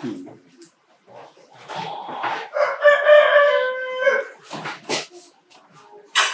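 A rooster crowing once, one drawn-out call about two and a half seconds in, lasting around a second and a half. Short clicks and brief voice sounds come before and after it.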